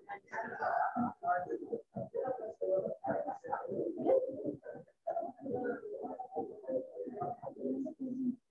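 Indistinct, muffled talking in the room, choppy and gated, as heard through video-call audio.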